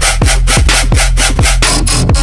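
Dubstep electronic music: a steady deep bass under a fast run of drum hits, each with a quick downward drop in pitch, about three to four a second, layered with a gritty synth.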